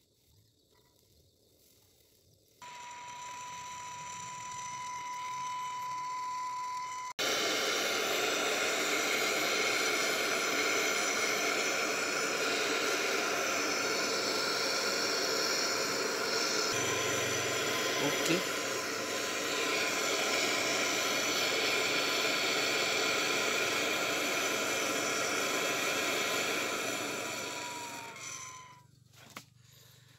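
Handheld gas torch burning with a steady hiss. It starts about three seconds in, becomes suddenly louder a few seconds later, and fades out near the end.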